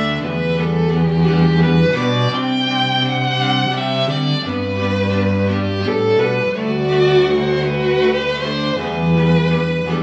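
String quartet of violins and cello playing long held chords. The cello's bass note changes about every two seconds beneath the upper voices.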